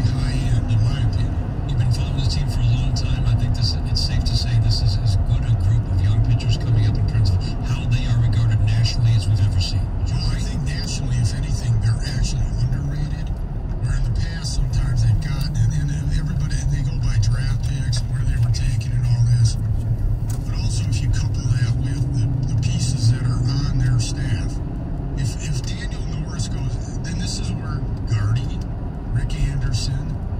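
Steady low road and engine rumble inside a moving car, with an indistinct voice running over it.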